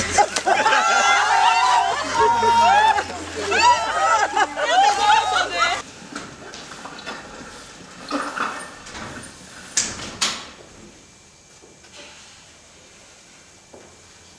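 High-pitched voices crying out loudly for about six seconds, then a quieter stretch with a few knocks.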